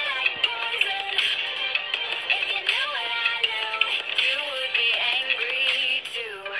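A song playing: a sung vocal melody over a full music backing.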